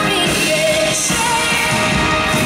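Live band music: a woman singing held notes through a stage microphone over a drum kit and cymbals.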